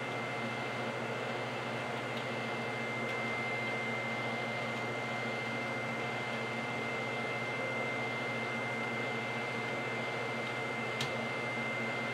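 Steady hum of running lab equipment and ventilation, with a constant high-pitched whine over a low electrical hum. A single click near the end.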